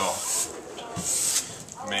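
A broken-in steel brush drawn along the base of a new cross-country ski, a scratchy stroke lasting about a second, cleaning loose material off the fresh base.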